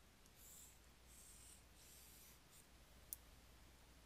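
Faint scratching of a stylus on a tablet screen: three short strokes in the first two and a half seconds as the remaining sides of a box are drawn, then a single light tap about three seconds in.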